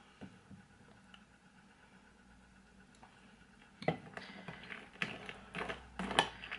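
Very faint at first; about four seconds in, a metal spoon starts clinking and scraping against a ceramic bowl as cereal and milk are stirred, in quick irregular clicks.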